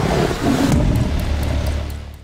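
Outro sound effect under an animated end card: a loud rushing whoosh over a deep rumble, with a scatter of sharp ticks in the second half, beginning to fade out near the end.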